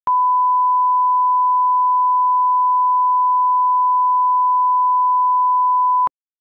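A 1 kHz line-up reference tone, the electronic test beep that runs with colour bars: a single loud, steady pitch held unbroken for about six seconds.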